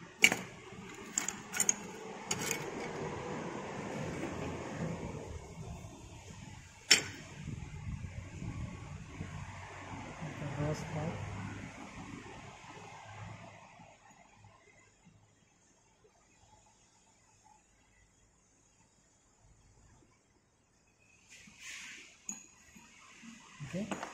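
Low, indistinct talk with several sharp clicks of hand tools against the sand mould and its metal moulding box, clustered in the first three seconds, with one more about seven seconds in. The second half is nearly silent apart from a brief rustle near the end.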